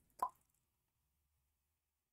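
A single short pop about a quarter second in, then near silence.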